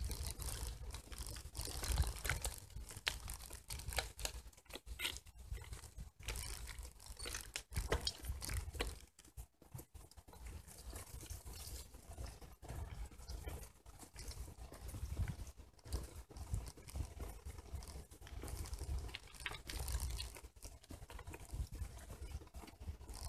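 Bicycle tyres crunching over a gravel path, with dense crackling clicks and an uneven low rumble throughout.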